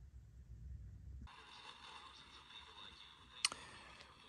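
Faint steady hiss from the speaker of a homemade two-transistor AM radio, starting about a second in, with a single sharp click near the end.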